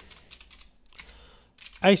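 Computer keyboard keys tapped in a quick run of faint clicks while a short name and a number are typed in.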